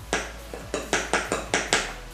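A makeup brush worked in a pot of loose setting powder: a quick run of about seven short, scratchy strokes at roughly five a second, starting just after the beginning.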